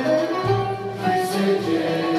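Turkish classical music ensemble playing, with ouds plucking among the instruments.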